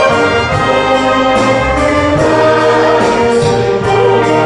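Wind band playing a slow piece, with flutes and a brass section of trumpets and saxophones holding full chords that change every second or so.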